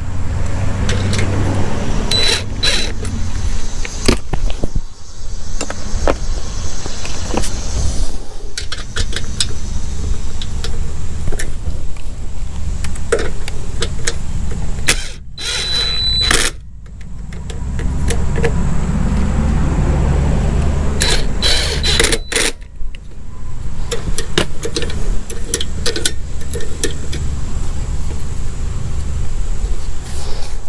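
Cordless drill with a socket bit running in short bursts, driving bolts on a small engine as a carburetor is fitted, with clinks of metal parts and tools in between.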